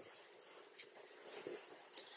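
Faint handling noise of silk and copper wire being wrapped around a fly hook held in a vise, with a few light ticks.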